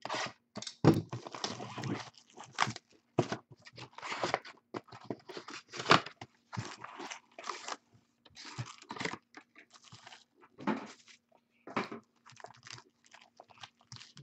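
Packaging from a trading-card box being crinkled and torn open, in a string of short, irregular bursts.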